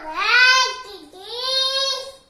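A toddler's high-pitched, wordless sing-song vocalizing: two long drawn-out cries, the first wavering up and down in pitch, the second rising and then held.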